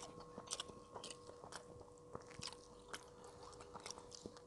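A man chewing a mouthful of yellow rice with fried side dishes: scattered faint wet mouth clicks and smacks at irregular intervals, over a faint steady hum.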